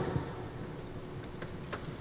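Quiet room tone in a pause between speech, with two faint clicks a little before the end.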